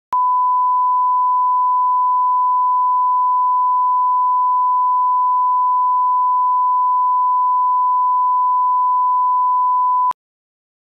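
Broadcast line-up reference tone of 1 kHz, the 'tone' of a bars-and-tone test signal: a single pure, unwavering pitch that switches on abruptly and cuts off abruptly.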